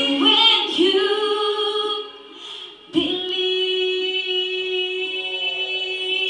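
Female voices singing without accompaniment: a few short sung phrases, a brief break about two seconds in, then one long held note to the end.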